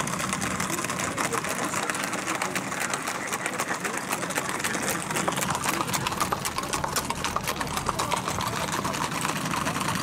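Hooves of a group of gaited horses on a paved road: a steady stream of many quick, overlapping clicks.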